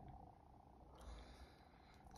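Near silence: faint room tone in a pause between chanting and speech.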